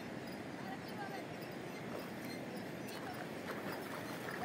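Steady rush of outdoor background noise at a river, with a few faint short calls now and then.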